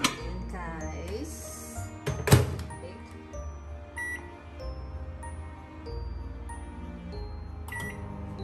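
Panasonic microwave oven: the door shuts with a sharp knock a couple of seconds in, then keypad beeps as the reheat time is set, once around the middle and again near the end. Background music plays throughout.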